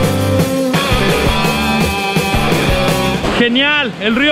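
Background music, which stops about three and a half seconds in as speech begins.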